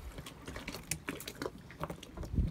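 Blunt scissors snipping through the spines of a lionfish, giving several sharp, irregularly spaced clicks and snips.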